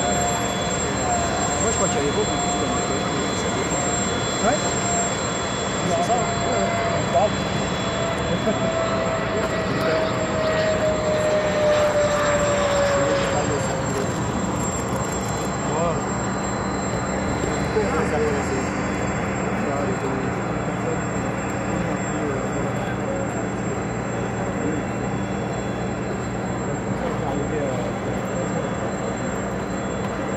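JF-17 Thunder's Klimov RD-93 turbofan running at low power through approach and touchdown, its whine falling slowly in pitch over the first half. People talk in the background throughout.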